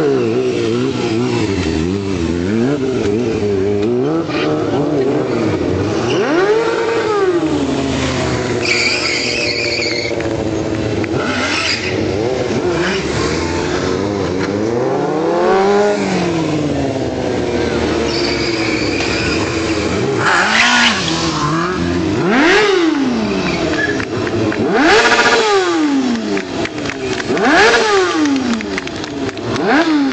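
Sport motorcycle engine revved up and down again and again during stunt riding, its pitch climbing and falling in long sweeps, with several short bursts of tyre squeal.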